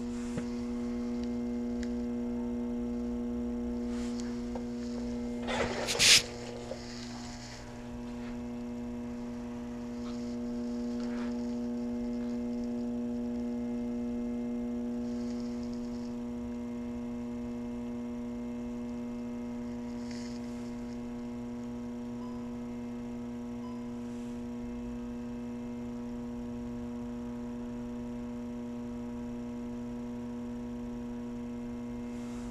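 Volkswagen B7 Passat's ABS pump motor running with a steady electric hum, switched on by a scan tool so the brakes can be bled through the ABS module. A single sharp knock about six seconds in is the loudest sound.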